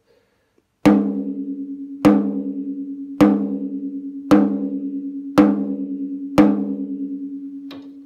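Wooden drumstick striking the coated Remo head of a 12-inch tom near its edge six times, about once a second. Each hit rings out with a pitched tone of about 204 Hz, with higher overtones, that wavers as it fades. These are edge taps at the lugs to measure lug pitch.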